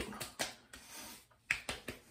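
Hands patting aftershave splash onto freshly shaved cheeks and neck: a few sharp slaps of palm on wet skin, one about half a second in and several close together near the end.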